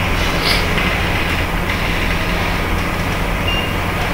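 Steady low mechanical hum over a constant background noise.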